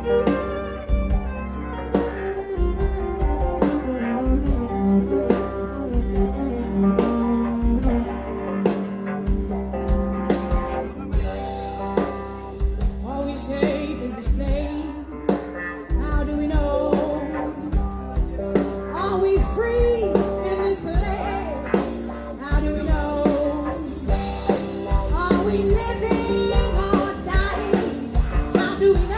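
Live blues-rock trio playing: bowed violin lines over electric guitar and drums, with a steady drum beat throughout.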